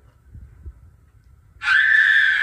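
Faint low rumble, then about one and a half seconds in a loud, high-pitched scream breaks out and is held at a steady pitch.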